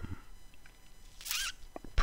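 The end of a man's drawn-out "um", then a short, hissing quick breath in a little past the middle.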